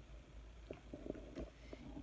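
Faint light taps and handling noise as rhinestones are set on a paper card with a rhinestone pickup tool, a few small ticks about a second in, over a low steady room hum.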